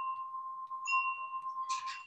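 A chime-like ringing tone held steadily on one pitch for about two seconds, with a fainter higher overtone, and a short noisy burst near the end.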